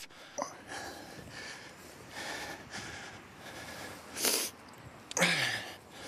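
A man's breathing and sniffing close to the microphone over a faint hiss, with one sharp sniff about four seconds in and a breath just after five seconds.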